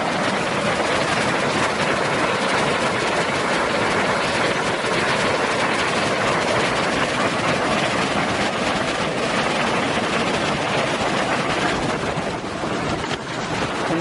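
Narada Falls, a waterfall in full flow after recent rainfall: loud, steady rushing water, easing slightly for a moment near the end.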